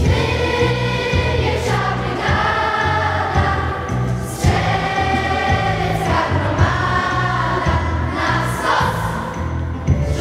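Large youth choir singing a Polish patriotic song in a church, held sung notes changing every second or so.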